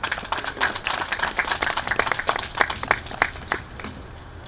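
Audience applauding: many hands clapping, thinning to scattered claps near the end.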